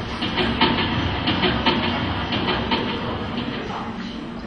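Rattling clatter of an old film projector, the sound effect that goes with a film countdown leader, played over an auditorium's speakers as a series of irregular clicks over a low rumble.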